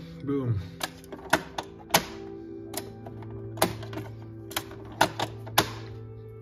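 Sharp, irregular plastic clicks and taps, about a dozen, as the hinged lid of a small plastic side box on a Hasbro Pulse proton pack is handled, opened and closed. Steady background music plays underneath.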